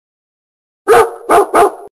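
A dog barking three times in quick succession, starting about a second in.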